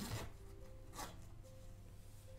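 Small zipper on a doll-sized fabric waist bag pulled closed in two short strokes, one at the start and one about a second in.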